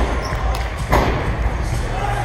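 Two thuds of a gymnast striking a sprung floor-exercise floor during a tumbling pass, one right at the start and a louder one about a second in.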